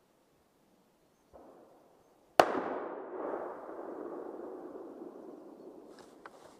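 A single gunshot about two and a half seconds in, sharp and loud, followed by a long echo that rolls on and dies away over several seconds.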